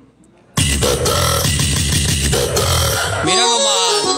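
A large sonidero speaker stack, silent for a moment, cuts in suddenly and loudly with a bass-heavy clip carrying a processed voice. Near the end the clip turns into swooping, pitch-bending sweeps.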